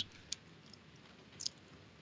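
Quiet room tone in a pause between spoken phrases, with two faint short clicks, one about a third of a second in and one about a second and a half in.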